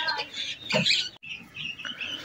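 Chickens feeding on scattered grain, giving short squeaky calls and a soft cluck in the first second. The sound cuts off abruptly just past the middle, and faint, scattered noises follow.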